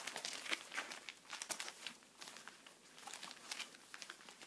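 Stiff Aida cross-stitch fabric rustling and crinkling in irregular bursts as it is handled, unfolded and held up.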